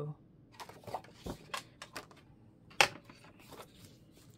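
Paper being handled and shifted around a paper trimmer and cutting mat: soft rustles and light taps, with one sharp click about three quarters of the way through.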